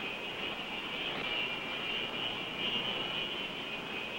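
Jet fighter's engine running steadily at taxi power: a high whine over a broad rush.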